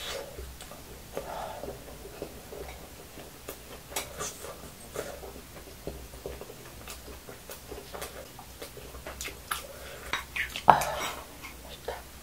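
Eating sounds: a metal spoon clicking and scraping against the dishes while fried rice is chewed. The clicks are scattered, and the loudest, sharpest one comes about a second before the end.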